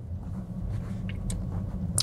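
Steady low road and tyre rumble inside the cabin of a Tesla Model S Plaid rolling at low speed on an electric drive, so there is no engine note. A couple of faint ticks come a little over a second in.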